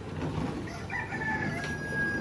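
A long, drawn-out high call starting just under a second in, held on one steady note for about a second before trailing off.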